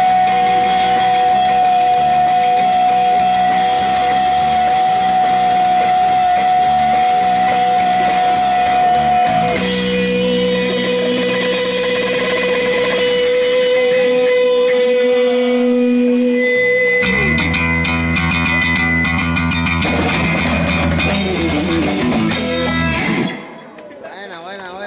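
Live punk rock band playing an instrumental passage on distorted electric guitars, bass and drums, with a long held high note over the first half and a lower held note after it. A denser, driving section follows and stops abruptly near the end as the song finishes.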